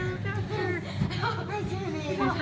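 Voices and chatter in a busy room over a steady low hum.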